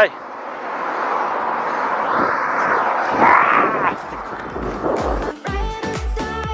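Wind and traffic noise on a compact camera's built-in microphone, swelling about three seconds in as a vehicle passes. Music with a steady beat comes in near the end.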